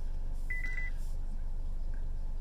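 A 2020 Honda Accord infotainment touchscreen giving one short high beep about half a second in as the menu entry is tapped, over a steady low hum in the car's cabin.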